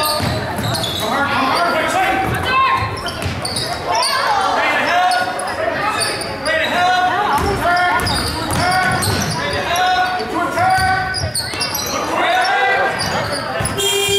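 Basketball being dribbled on a gym's hardwood floor, amid players and spectators shouting in a large, echoing hall.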